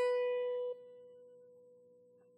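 Electric guitar: a single picked note, the B at fret 7 of the high E string, ringing out. It drops suddenly in level a little under a second in, then fades slowly.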